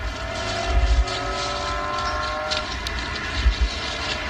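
A car engine running past, its pitch drifting slowly down over the first two and a half seconds, with a few low thuds.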